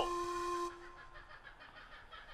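A steady held tone with overtones fades out within the first second, followed by near silence.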